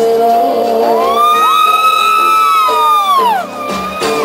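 Live cumbia band music played loud on stage, with a long whoop over it that rises about a second in, holds, and falls away near the end.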